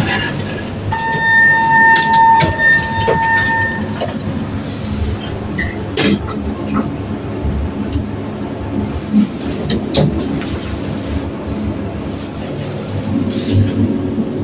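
Elevator car travelling, a steady low rumble with occasional clicks and knocks. About a second in, a steady high tone sounds for about three seconds.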